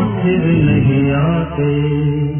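A Hindi film song playing: a voice singing long held notes over instrumental accompaniment.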